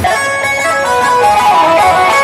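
Loud live band music, with a lead instrument playing a changing melody line.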